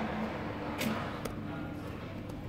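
Two sharp clicks of a computer mouse, a bright one a little under a second in and a fainter one soon after, over a steady low background hum.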